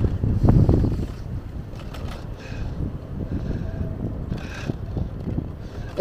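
Wind buffeting the microphone: an uneven low rumble that gusts strongest in the first second and then keeps fluttering at a lower level.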